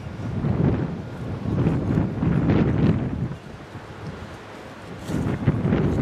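Wind buffeting the microphone in gusts: a rough rumble that eases off for a couple of seconds past the middle and picks up again near the end.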